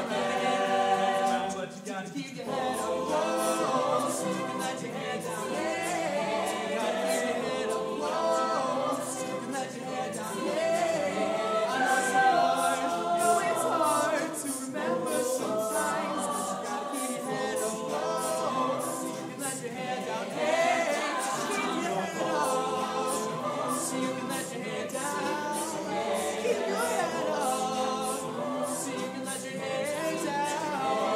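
High school chamber choir singing an a cappella pop arrangement in several voice parts, with a steady beat of short clicks running through it.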